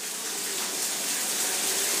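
A steady rushing hiss with no clear pitch or rhythm, growing slightly louder.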